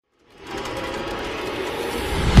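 Film production-logo sound effect that fades in about a quarter second in: a dense, busy swell that slowly grows louder, building toward the logo music.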